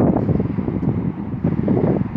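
Wind buffeting a phone's microphone: a loud, gusty low rumble that rises and falls unevenly.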